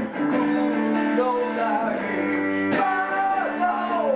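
Live song: an electric guitar strummed and picked through a small Fender combo amp, with a man singing over it.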